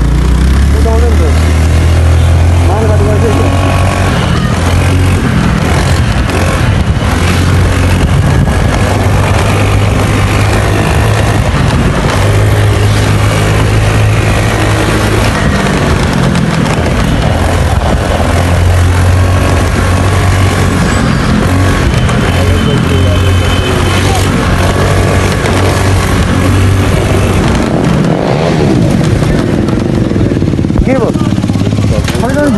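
Motorcycle engine running while riding along a road, its note shifting in steps, with indistinct voices over it.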